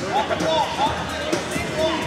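Hubbub of a busy hall, with voices calling out and talking over one another and music playing in the background.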